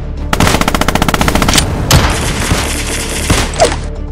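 Battle sound effects of machine-gun fire: a rapid burst about a second long begins shortly in, followed by scattered single shots over ongoing battle noise.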